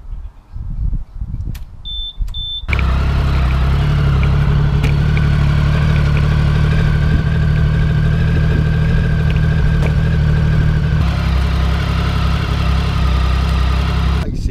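Two short beeps from a Datatool motorcycle alarm being disarmed, then the Triumph Sprint ST 1050's three-cylinder engine starts and idles steadily.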